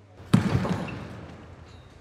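A basketball shot at a poolside hoop: one sharp hit about a third of a second in, then a noisy tail that fades over about a second.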